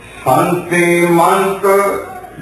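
A man's voice chanting on a steady, held pitch, a sung devotional line in place of spoken words. It starts about a quarter second in and runs in long sustained phrases until just before the end.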